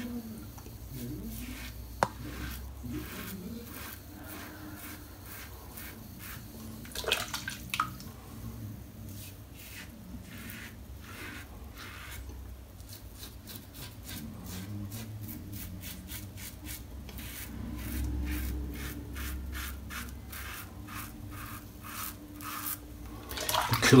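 Karve Christopher Bradley safety razor with a Gillette Super Stainless blade scraping through lathered stubble: runs of short, crisp strokes, several a second, with brief pauses between passes.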